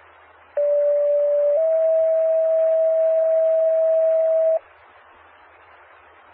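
Two-tone sequential radio page over a fire dispatch channel: one steady pure tone for about a second, then a slightly higher tone held about three seconds, with radio hiss before and after. These are alert tones paging out an ambulance crew.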